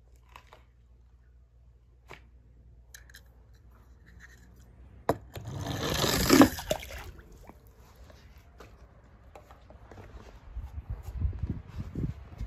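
A die-cast toy car rolling down a plastic slide: a sharp click about five seconds in, then a rolling scrape for about two seconds. Soft knocks and handling sounds near the end.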